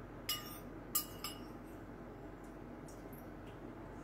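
Metal spoon clinking against a soup bowl: three sharp, ringing clinks in the first second and a half, then a few fainter taps.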